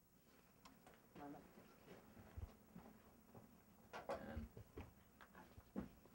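Near silence: quiet room tone with a few faint, indistinct murmured voices and a couple of soft low knocks.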